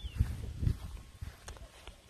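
Footsteps of a person walking across a grass lawn in sandals: a run of dull thumps in the first second, with a couple of light clicks later.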